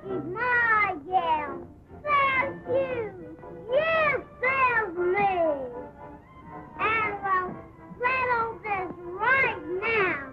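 Toddlers' high-pitched voices talking in a quick run of sing-song syllables, each rising and falling in pitch, with faint background music beneath.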